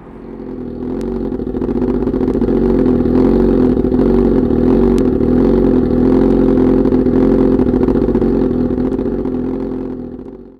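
2011 Suzuki GSX-R1000's 999 cc inline-four engine running steadily at idle through its Voodoo exhaust, growing louder over the first couple of seconds, then holding even.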